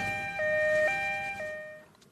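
Two-tone ambulance siren alternating between a high and a low note about every half second, fading away near the end.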